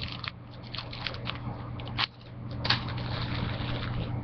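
Plastic confetti packets crinkling and rustling as they are handled, with scattered sharp crackles, the loudest about two seconds in. A steady low hum runs underneath.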